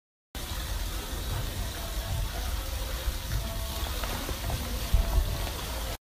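NormaTec pneumatic compression boots in use, their air pump running with a steady hiss of air as the leg sleeves inflate.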